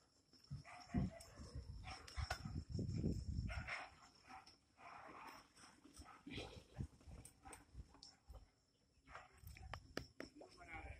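Faint, scattered animal calls in short bursts.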